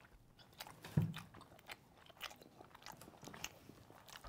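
Close-miked chewing of soft, cheesy mac and cheese: a run of small wet mouth clicks and smacks, with one brief low sound about a second in.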